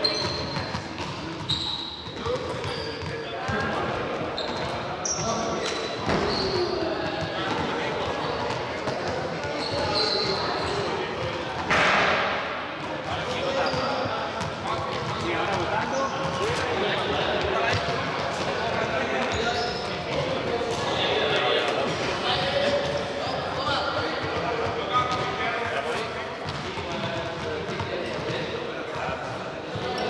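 Echoing sports-hall ambience of background voices, with repeated thuds of balls bouncing and being caught, and one louder knock about twelve seconds in.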